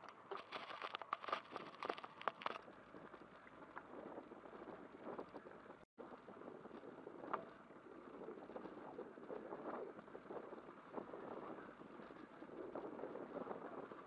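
Bicycle rattling and knocking as it rolls over a bumpy dirt track, with a dense run of jolts in the first two or three seconds, then a softer, steady rumble of tyres and rattle. The sound cuts out for an instant about six seconds in.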